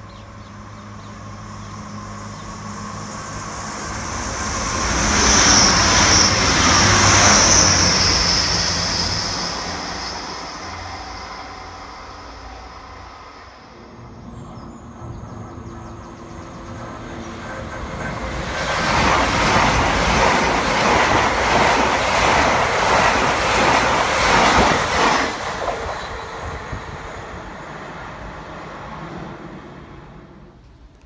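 Two electric express trains run through one after the other, each building to a loud rush of wheels on rail and fading away. The first carries a high whine as it passes. The second is an LNER Azuma high-speed train.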